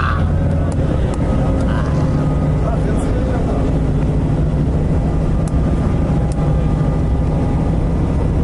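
Steady low drone of a coach bus's engine and road noise heard from inside the moving bus's cabin.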